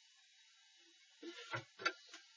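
Faint room hiss, then a few light knocks and clicks of a wooden straight edge being shifted and set down on a drawing board, starting a little over a second in, the loudest just before the end.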